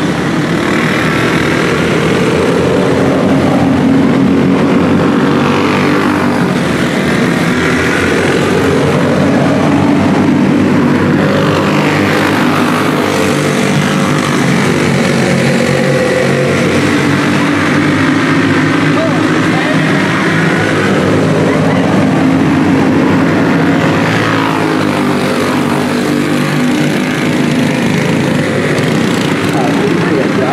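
A pack of dirt-track karts with small four-stroke single-cylinder clone engines racing together. The engines wail continuously, their pitch rising and falling as the karts pass and go through the turns.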